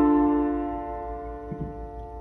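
A D minor chord (D, F, A) held on a Nord Stage 2 EX stage piano's piano sound, slowly fading away.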